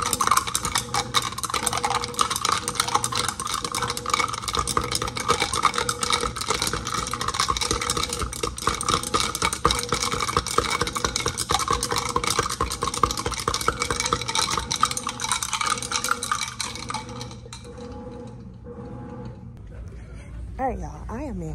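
A straw stirring a powdered greens drink into water in a tall drinking glass, with rapid, continuous clinking of the straw against the glass that stops a few seconds before the end.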